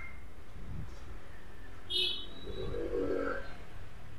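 A single short metallic clink with a brief ring about two seconds in, as a Seagate 2.5-inch laptop hard drive in its metal caddy is set down on the metal cover of the laptop's optical drive. A fainter low-pitched sound follows for about a second.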